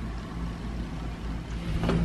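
Steady low hum of household machinery, with one soft knock near the end.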